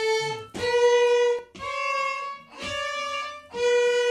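Violin bowed in a series of single sustained notes, each about a second long with a short break between bow strokes, the pitch changing from note to note as in a lesson exercise.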